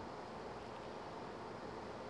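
Faint, steady background hiss of room tone, with no distinct sounds.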